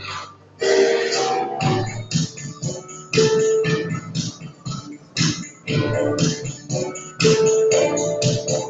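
Loud dance music with plucked guitar over a steady, rhythmic beat.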